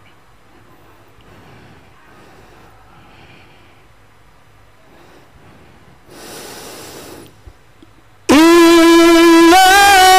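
Faint hall murmur, then a short noisy breath-like rush on the microphone about six seconds in. Near the end a Quran reciter starts tilawah: a loud, amplified voice holds one long, steady high note, then begins to turn it in melismatic ornaments.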